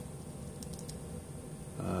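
A few faint keystrokes on a computer keyboard, typing a command, over a steady low hum.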